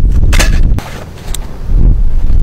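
Heavy low rumbling of wind buffeting the microphone, dropping away about a second in and returning near the end. A short rustling crunch comes near the start, as a mesh bag of soccer balls is set down on artificial turf, and a light click follows midway.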